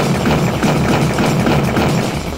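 A loud, steady noise-like sound effect that starts just before and cuts off right at the end, over background music with a pulsing bass.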